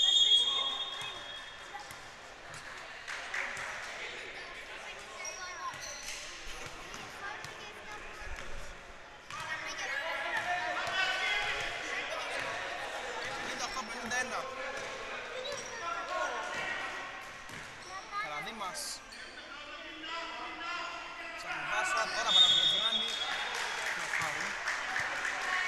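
Basketball dribbled on a hardwood gym court, with voices calling out in the echoing hall. A short referee's whistle sounds near the end.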